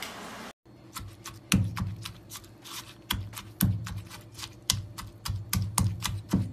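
Pestle pounding red chillies and garlic in a marble mortar for a Thai chilli paste: irregular knocks of stone on stone, one to three a second, each with a dull thud. A steady hiss cuts off about half a second in, before the pounding starts.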